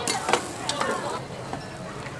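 Noodles frying on a flat iron griddle, sizzling, with a few sharp metal clicks of a spatula or tongs working the food.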